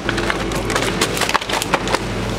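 Close crackling and clicking of plastic as groceries and their packaging are handled in a plastic shopping basket: a dense, irregular run of sharp clicks.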